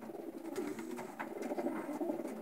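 Racing pigeons cooing: a continuous low, wavering murmur of overlapping coos, with a few faint clicks.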